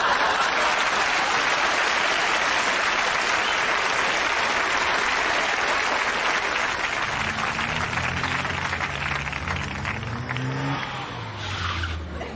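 Audience applause, fading away over several seconds. From about seven seconds in, a car engine is heard accelerating, its pitch rising several times.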